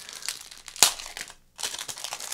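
Thin clear plastic bag crinkling as it is handled and pulled off a new stickerless 3x3 speed cube, with one sharp crackle a little under a second in.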